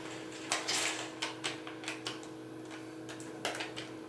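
Steady hum inside an elevator cab, with a scatter of light clicks from the car-call buttons being pressed.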